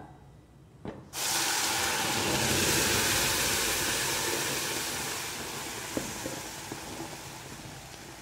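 Rice batter poured into a hot oiled pan about a second in, setting off a loud sizzling hiss that slowly fades as it cooks.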